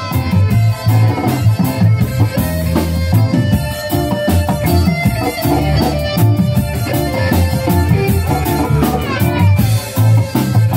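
Live reggae band playing a passage without vocals: bass guitar, drum kit, keyboard and electric guitar. A falling glide in pitch comes near the end.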